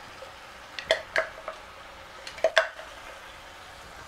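Wooden spoon knocking and scraping against a clear container as tomatoes are scraped out into a pot: a few short knocks, a pair about a second in and a cluster of three about two and a half seconds in.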